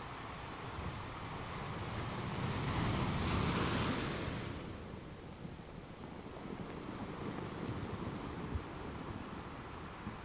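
Shallow surf washing up a sandy beach: a steady hiss of foaming water that swells to its loudest about three seconds in as a wave runs up, then falls back.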